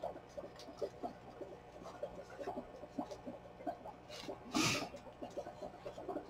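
Faint rustling and small ticks of hands handling a paper tag and silk ribbon, with one brief, louder swish about four and a half seconds in.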